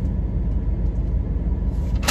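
Pickup truck engine idling, a low steady rumble heard inside the cab.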